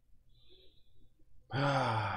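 A man's long, voiced sigh, falling in pitch, starting about halfway through after a quiet stretch.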